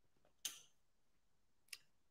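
Near silence with two faint, short clicks, about a second and a quarter apart.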